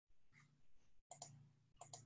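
Near silence, with a few faint, short clicks.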